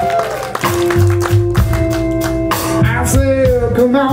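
Blues-rock band playing live: electric guitar, bass and drum kit, with a long held note about a second in.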